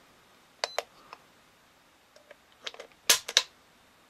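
Sharp metallic clicks of a Beretta PX4 Storm's hammer and trigger being worked as the pistol is dry-fired in single action against a digital trigger pull gauge. A few light clicks come about a second in, and a louder cluster comes about three seconds in.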